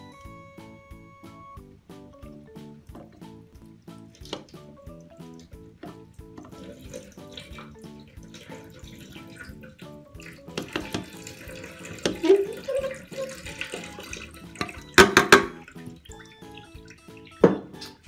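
Water poured into a sink's overflow and running and splashing down the drain, flushing out old cigarette debris. Background music plays, and two brief louder sounds come near the end.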